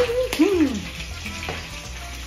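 Tacos frying in hot oil in a skillet, a steady sizzle, with a short vocal 'ah' and a falling 'ooh' in the first second.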